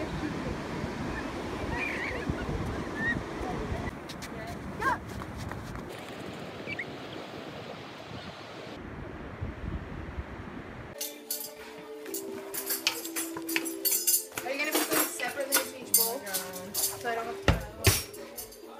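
Surf washing on a beach, with faint distant voices. About eleven seconds in it cuts to a utensil clinking and scraping in a metal cooking pot as pasta is stirred, over background music.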